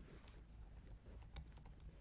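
Faint typing on a computer keyboard: a few scattered keystrokes.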